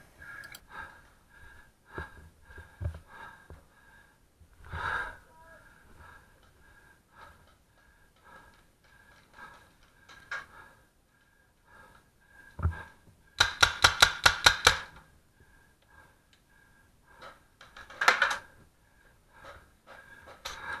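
Paintball marker firing a rapid burst of about ten shots, roughly seven a second, about two-thirds of the way in, then a couple more shots near the end. Scattered faint knocks and thumps come in between.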